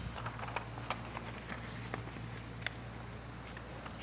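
Faint scattered clicks and light taps, one sharper click near the end, over a steady low electrical hum from the sound system.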